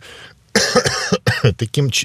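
A man's voice close to a microphone: a short breathy pause, then about a second and a half of talking.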